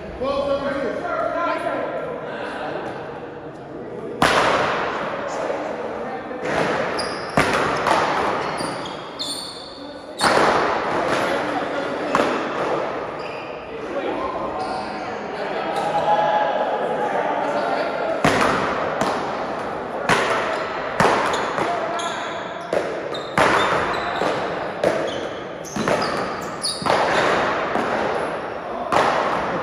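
Paddleball rally: repeated sharp smacks of paddles striking a rubber ball and the ball hitting the wall and floor, echoing in a large hall, starting about four seconds in and coming at an irregular pace.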